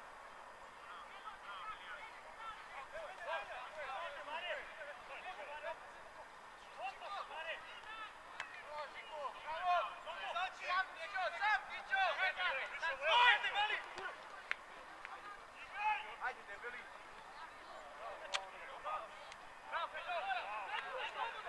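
Several voices shouting and calling across an outdoor football pitch during play, often overlapping, loudest about two-thirds of the way through. A single sharp knock sounds near the end.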